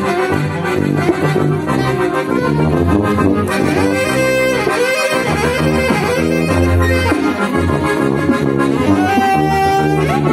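Accordion, alto saxophone and tuba playing a hymn together, the tuba carrying the low bass line under the accordion's chords. A single long note is held near the end.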